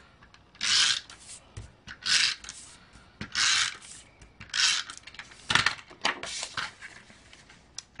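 Stampin' Up! SNAIL adhesive tape runner drawn across the back of a paper panel in about six short strokes, roughly one a second. It is laying down adhesive before the panel is layered onto the card.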